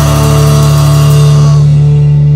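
A rock band's loud chord held and ringing out, steady in the low end while its top slowly dies away.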